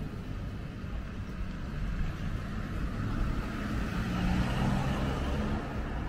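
Road traffic on a town street: car engine and tyre noise, steady at first, then swelling about three and a half seconds in as a vehicle goes by close, and easing off just before the end.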